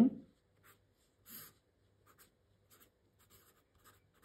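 Marker pen drawing a line on paper: a series of short, faint scratchy strokes, the loudest about a second and a half in.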